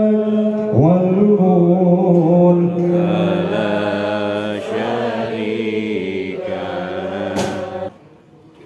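A man chanting a melodic religious recitation solo into a hand microphone, holding long notes with slow bends and ornamented turns; the chant stops just before the end.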